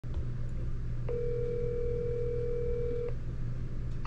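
Phone ringback tone over speakerphone: one steady ring about two seconds long, starting about a second in, while the call waits to be answered. A steady low hum runs underneath.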